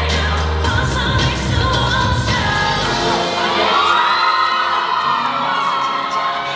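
K-pop song with singing, played loud over the sound system for a dance cover. The heavy bass drops out about three seconds in, leaving the vocal over lighter backing.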